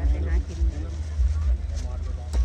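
A constant low rumble with an uneven pulse, and a woman's voice over it near the start.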